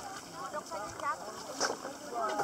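Voices of a group of people calling out and chattering, no words clear, over water sloshing around people wading.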